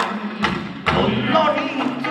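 Kawachi ondo band playing: three heavy taiko drum strikes in the first second, then electric guitar and the singer's voice over the beat.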